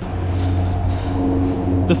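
A motor vehicle engine running steadily, a low even hum.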